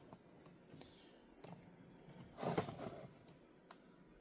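Faint crackling and rustling of dry orchid roots and sphagnum moss being pulled apart by hand, with one louder rustle about halfway through.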